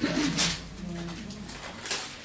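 A person's low wordless hum, like a short 'hmm', along with the rustle of thin Bible pages being turned, with one page flipped near the end.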